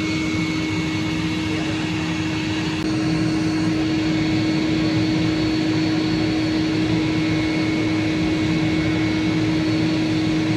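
Two liner vacuums running steadily, a constant droning whine, holding the new vinyl pool liner sucked tight to the wall; the drone gets slightly louder about three seconds in.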